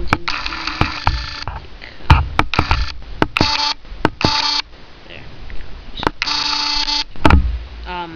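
Sharp plastic clicks from a Transformers Wheelie toy being handled and its chest symbol turned, among several steady electronic beep tones. The beeps come in blocks of different lengths: a long one near the start, three short ones in the middle and another long one near the end.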